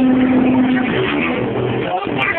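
Live band playing with a singer: electric guitar, drums and voice. A long held note ends about a second in.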